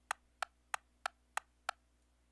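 Metronome click track from a song's multitrack sequence, soloed and played back: six even clicks at about three a second, stopping near the end.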